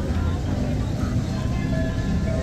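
Busy outdoor city ambience: a steady low rumble with faint voices of a crowd in the background.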